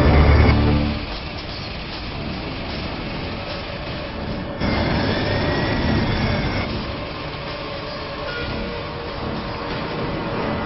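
Low-flying jet airliner's engine roar mixed with tense film music, heaviest in the first second. The sound breaks off sharply about halfway through and comes back louder, with a faint rising-and-falling whistle.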